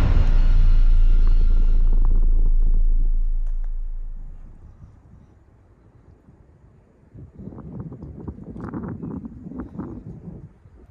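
A deep booming rumble from the background music dies away over the first four or five seconds. From about seven seconds in, footsteps scuff and knock across bare rock.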